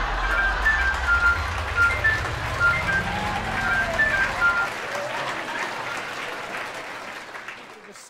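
Short show jingle: a tinkly melody of quick high notes over a low tone that rises steadily and a noisy wash, all fading out over the last few seconds.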